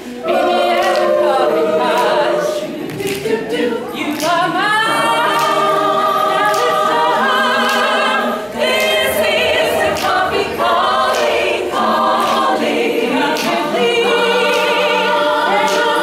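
Women's a cappella choir singing held chords in close harmony, with vibrato on the long notes. Sharp clicks come through about once a second.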